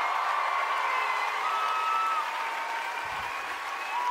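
Theatre audience applauding.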